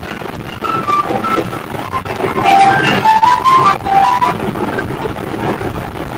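Music from a mobile phone coming through a video-call connection: a simple tune of held notes, climbing in steps about halfway through, over a steady noisy hiss.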